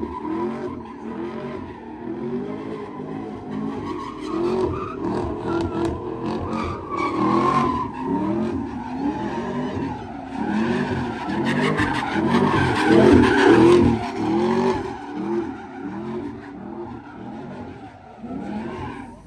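Car doing donuts: its engine revs up and down about once a second over the screech of spinning tires, loudest a little past the middle.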